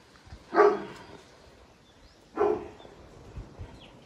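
A Great Pyrenees barking: two single loud barks about two seconds apart.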